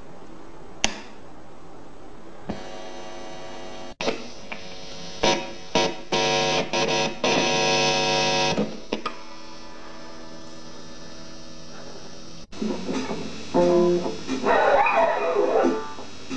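Behringer GTX30 guitar amp switched on with a click about a second in, then a steady hiss. A buzzing hum from the live guitar cable grows loud and stutters while the jack is pushed into the electric guitar, and stops once it is seated. Near the end, the electric guitar is played through the amp with distortion.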